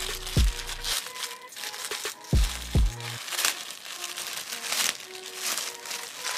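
Clear plastic garment bag crinkling as hands handle the packaged dress, over background music with a few deep bass hits.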